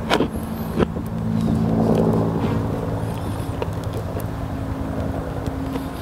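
A vehicle engine running steadily, swelling a little about two seconds in, with two sharp clicks in the first second.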